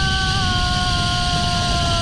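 A man on a zip line giving one long, held yell that sinks slightly at the end, over a steady rush of wind on the microphone and the pulley trolley running along the steel cable.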